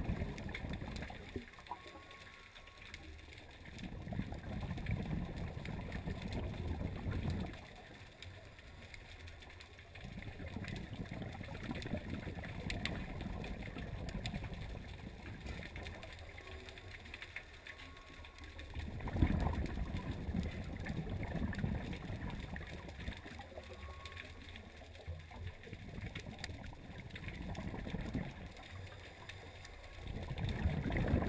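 Scuba regulator breathing heard underwater through a GoPro housing: bouts of bubbling exhalation come roughly every six seconds, with quieter stretches between.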